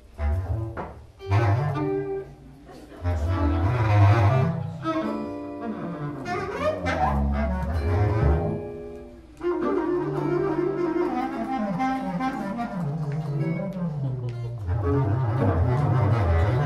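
Free improvisation on bass clarinet and cello: low bowed cello notes and bass clarinet tones in irregular, unmetred phrases, with pitches sliding down through the middle.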